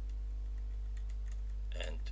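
Computer keyboard keys, the arrow keys, clicking a few times faintly over a steady low hum.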